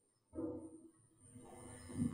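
Quiet room tone with a short faint sound about half a second in and soft indistinct sounds building toward the end.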